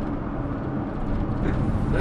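Steady low rumble of road and engine noise inside a moving vehicle's cabin, with a short laugh right at the end.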